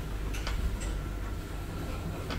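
Old Svenska Hiss traction elevator car running through its shaft: a steady low rumble with a faint thin whine, broken by a few sharp clicks within the first second.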